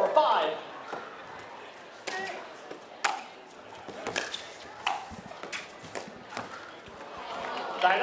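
Pickleball rally in a large hall: paddles popping against the plastic ball about once a second, each hit ringing in the room. A voice is heard at the start and another near the end.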